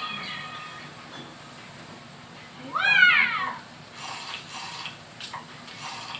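A cat's single meow about three seconds in, rising and then falling in pitch.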